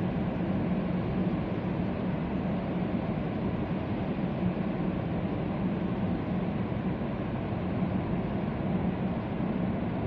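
Steady road noise heard inside a car's cabin as it drives through a highway tunnel: an even rush of tyre noise with a low, steady hum.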